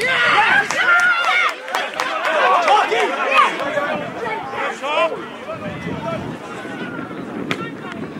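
Footballers' voices shouting and calling to each other, too far off for words to be made out. They are loudest in the first few seconds, then quieter.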